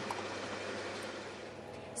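Petrol being pumped through a fuel nozzle into a car's tank: a steady hiss of flowing fuel.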